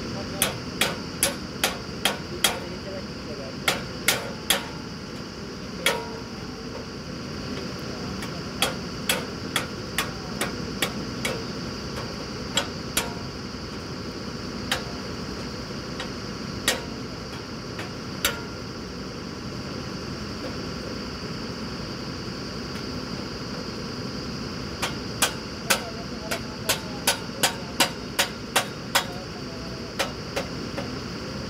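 Sharp hammer blows on metal, in runs of several quick strikes about two to three a second, with a long pause before a final run of about a dozen. Under them the drilling rig's engine runs steadily.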